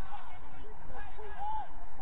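Footballers' distant shouts and calls across the pitch: several short cries that rise and fall, over a steady low rumble.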